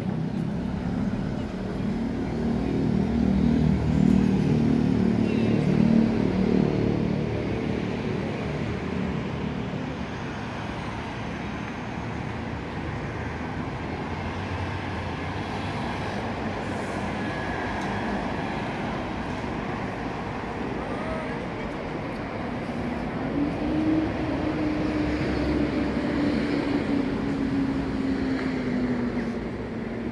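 Outdoor city ambience: steady road-traffic noise, with a vehicle engine louder over the first several seconds and a low hum slowly dropping in pitch near the end.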